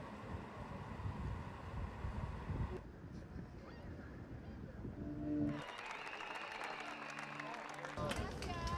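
Outdoor street and crowd ambience with indistinct voices, broken by abrupt cuts about three seconds in and again about five and a half seconds in, with a short humming tone just before the second cut.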